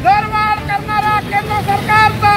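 Vehicle horn honking in a rapid run of short toots of steady pitch, about five a second.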